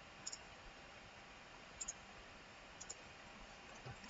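Computer mouse button clicking three times, each click a quick pair of ticks, over faint room noise.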